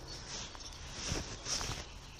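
A few short rustles and crunches on a floor of leaf litter and wood chips as a person bends over a tent and works on it by hand.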